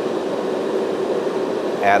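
Propane ribbon-burner forge running: a steady rush of blower air and burning gas, with the air being dialed up on a fuel-rich flame.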